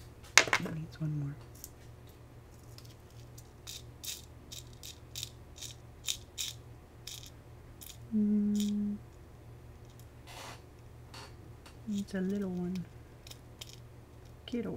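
Small plastic gems clicking and rattling in a plastic triangle tray as they are picked through, after a sharp knock right at the start. Two brief hummed voice sounds, about eight seconds in and near the end.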